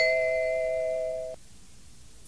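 Two-note descending electronic chime (ding-dong): the lower second note sounds right at the start, and both notes ring together for over a second before fading out. It is the signal that separates one question from the next in a recorded listening test.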